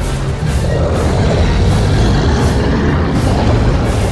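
Dramatic film-score music over a heavy, deep rumble.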